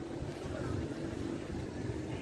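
Wind on the microphone: a steady low rumble and hiss.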